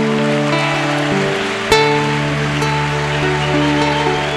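Instrumental interlude of a slow romantic ballad: acoustic guitars play over held backing chords, with a fresh chord plucked a little under two seconds in.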